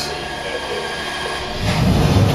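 Backup generator starting up automatically in a simulated power outage: a low engine rumble comes up sharply near the end. Before it there is a thin, steady high-pitched whine.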